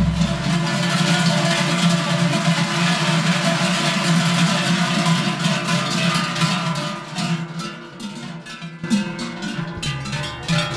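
Many large Swiss Treicheln (forged cowbells) swung together by a line of bell ringers, a dense continuous clanging that grows quieter and breaks into separate strokes near the end.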